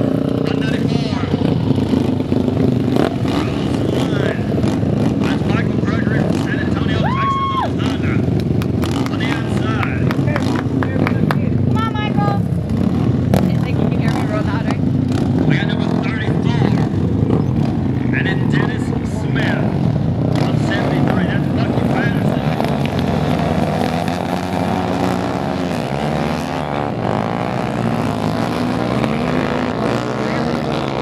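Several dirt-track racing motorcycles running at the start line, their engines idling and blipping, then revving up together near the end as the pack gets away.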